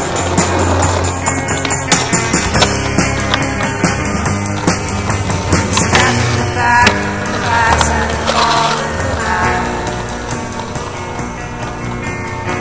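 Rock music soundtrack mixed with skateboard sounds: wheels rolling on pavement and a few sharp clacks of the board.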